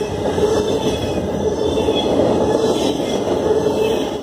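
Intermodal freight train's container well cars and trailer flatcars rolling past close up: steady, loud noise of steel wheels on rail, with a steady drone running under it.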